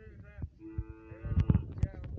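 A cow lowing once: one long, steady call starting about half a second in. It is followed by a few sharp knocks.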